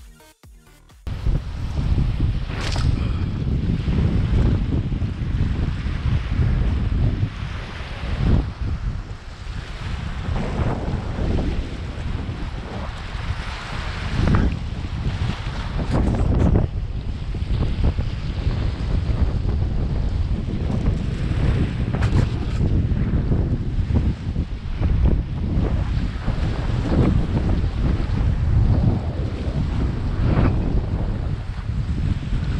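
Wind buffeting an action-camera microphone in gusts, a heavy low rumble, with small waves washing against a rocky lakeshore underneath.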